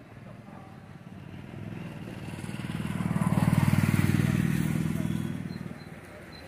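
A motor vehicle, likely a motorcycle, passing by: its engine grows louder from about a second and a half in, is loudest in the middle and fades away near the end.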